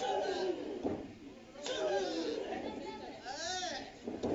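Wrestling crowd voices in a hall: chatter and shouts, with one drawn-out rising-and-falling yell near the end. A short sharp knock comes about one and a half seconds in.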